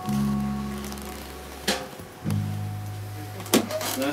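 Two low notes on a plucked string instrument, each struck and left to ring and fade, with a short click between them.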